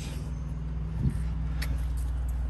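A motor vehicle engine idling with a steady low hum; a brief knock about a second in.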